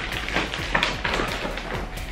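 Grocery packages being handled: plastic wrapping crinkling and a scattered run of light taps and clicks as items are picked up and set down on the counter.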